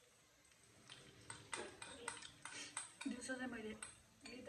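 A metal spoon clinks and scrapes against a bowl in a run of quick sharp clicks, starting about a second in. In the last second a voice hums or speaks under it.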